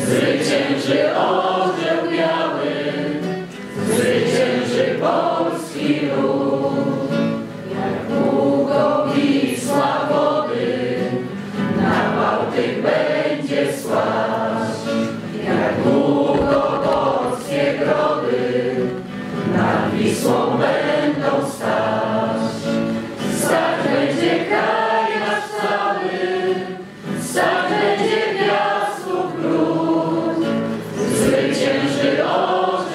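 A group of voices singing a Polish patriotic song together, a communal sing-along, in phrases of about four seconds.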